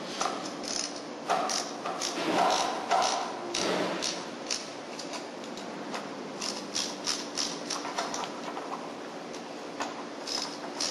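Metal wrench and wire-rope cable clamp hardware clicking and clinking as the clamp nuts are tightened down on steel cable at a thimble. The clicks are short and irregular, with a few heavier knocks in the first few seconds and quicker, lighter clicks later.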